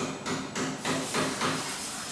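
A quick series of light tapping or knocking strikes, about four a second.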